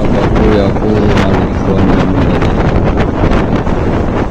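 Steady loud rushing noise, like wind on the microphone, with a faint voice underneath.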